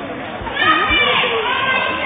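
Children's voices and chatter in a large hall, with a higher call or shout standing out about half a second to a second in, over a few low thuds.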